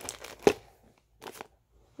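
Packaging being handled: short bursts of crinkling and rustling, with a sharp click about half a second in and another brief rustle a little after a second.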